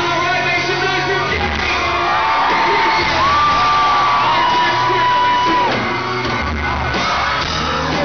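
Live pop-rock band playing with the lead singer singing into a handheld mic, with long held notes in the middle. It is recorded from inside the crowd in a large hall.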